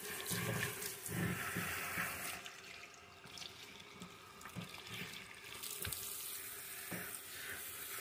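Water running from a tap into a salon shampoo bowl as a child's hair is rinsed, fairly quiet and steady, with a few soft bumps in the first second or two.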